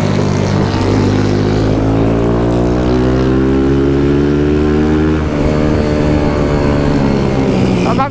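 Honda CG 160 single-cylinder motorcycle engine pulling hard under acceleration, its pitch climbing over the first few seconds, with a brief dip about five seconds in like a gear change before it runs on high.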